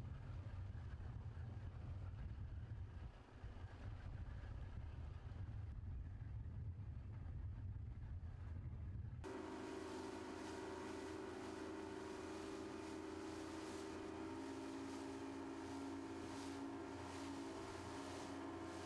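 A low, steady rumble for the first half, then a sudden change about halfway to a motorboat engine running steadily, a constant hum over the hiss of water and wind.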